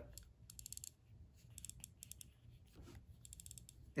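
Faint rapid ticking from a 2nd-generation iPod nano's click-wheel clicker as the wheel is scrolled, in several short bursts. It is the sign that the iPod is powered on even though its display stays black.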